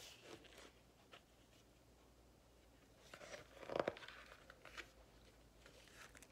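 A picture book's page being turned and the book handled: faint papery rustles at first, then a louder crinkly scrape and rustle of the page about three to four seconds in.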